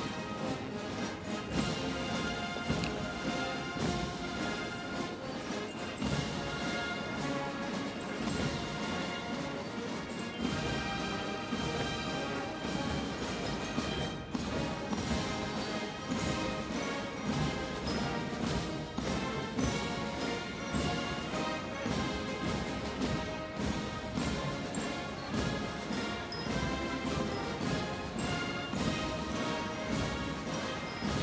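Military brass band playing a march, with a steady drum beat.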